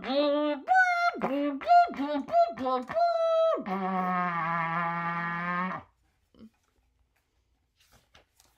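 Trumpet played deliberately rough, acting out the book's 'Bl-ap! Fr-ip! Br-ip! Vr-ip!': a quick run of short blatting notes, several dropping off in pitch, then one long low buzzy note that stops about six seconds in.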